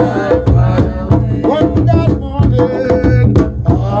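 Ensemble of hand drums, djembe-style goblet drums and a large rope-laced barrel drum, played with bare hands in a steady interlocking rhythm, with men chanting a song over the drumming.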